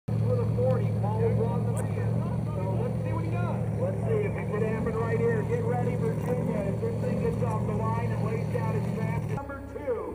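An engine running steadily at idle, a low even drone, under several people talking at once. The drone stops abruptly about nine seconds in.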